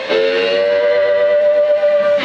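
Live blues music: one bright note is held steadily for about two seconds, starting after a brief dip at the very start.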